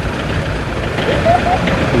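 Busy street noise with a vehicle engine idling steadily close by, and a brief faint voice in the background about a second in.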